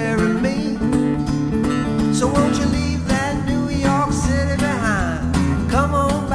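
Acoustic guitar strummed steadily while a man sings over it, with a sung slide in pitch about four to five seconds in.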